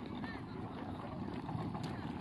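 Wind rumbling on the microphone, with faint background voices and one short high chirp-like call a moment after the start.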